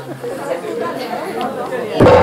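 Indistinct chatter of several overlapping voices, with no clear words.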